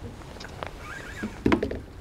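A few light clicks and a sharper knock about one and a half seconds in, over low outdoor background sound.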